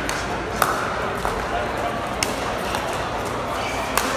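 A pickleball rally: paddles hitting a plastic pickleball, giving about four sharp pops at uneven intervals, some with a short ring. Steady voice murmur underneath.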